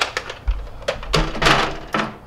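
Plastic Nerf blasters clattering and knocking against each other and the inside of a microwave as they are pushed in by hand: a string of irregular hard knocks and scrapes.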